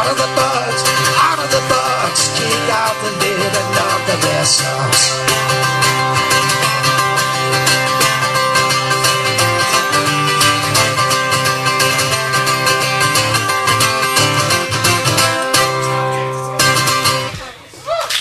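Steel-string acoustic guitar strummed steadily through a song's instrumental outro, ending about sixteen and a half seconds in on a last chord that rings out briefly and fades.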